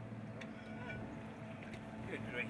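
A steady low mechanical hum, with a couple of faint ticks about half a second in.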